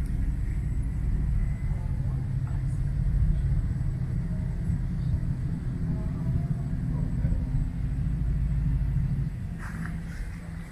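A low, steady rumble that fades near the end.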